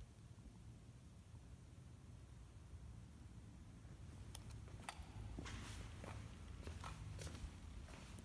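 Faint footsteps and scuffs of someone walking slowly in a quiet church, with a few small clicks in the second half, over a low steady rumble of room tone.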